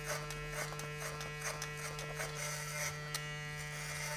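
Cordless electric hair clippers with a guard buzzing steadily as they cut up the back of the head, with light crackling from the hair being cut.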